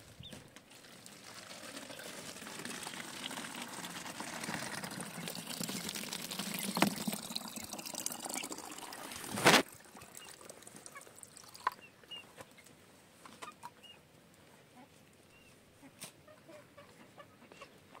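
Water pouring from an animal-skin water bag into a plastic bottle, the splashing growing louder over about nine seconds and ending in one sharp knock. After that it is quieter, with small clicks and a few faint clucks from chickens.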